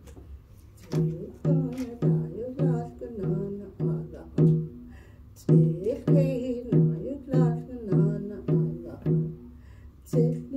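A round hide hand drum is beaten steadily with a beater, about two beats a second, each beat ringing with a low tone. A woman sings a Navajo song over it. The drumming pauses briefly in the first second and again about halfway through.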